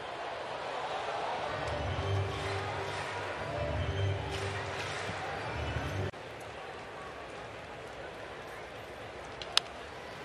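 Ballpark crowd murmur with stadium PA music over it that cuts off abruptly about six seconds in. Near the end, a single sharp crack of bat on ball as the batter fouls off a pitch.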